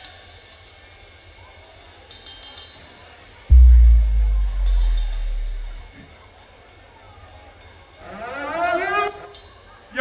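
Electric bass guitar sounding a single very low note about three and a half seconds in, the loudest thing here, ringing for about two seconds and fading. Under it run steady light quick ticks from a tapped hi-hat, and a man's voice starts near the end.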